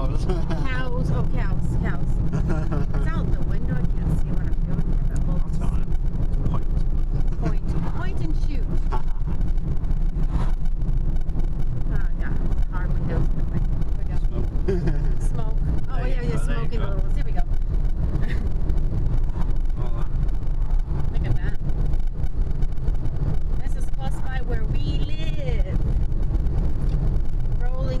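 Steady low road and engine rumble heard inside a moving car's cabin, with quiet talk now and then over it.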